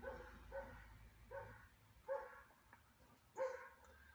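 A dog barking faintly: about five short barks at uneven intervals.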